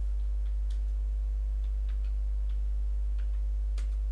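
Computer keyboard keys clicking, faint and irregular, as a short command is typed. A steady low hum runs under the clicks.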